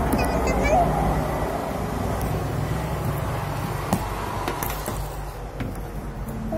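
A few light clicks and taps of a small plastic toy capsule being handled on a table, over a steady low background rumble, with a short voice sound near the start.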